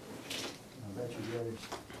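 Faint voices with a short scrape about a third of a second in and a few light clicks near the end, the kind of sound made by small metal pieces handled on a wooden workbench.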